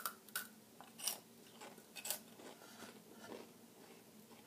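Faint crunching and chewing of Flamin' Hot Cheetos, with a few sharp crunches in the first two seconds and softer ones after.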